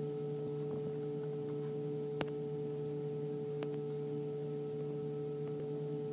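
A steady low hum made of a few fixed tones, unchanging throughout, with a couple of faint clicks about two and three and a half seconds in.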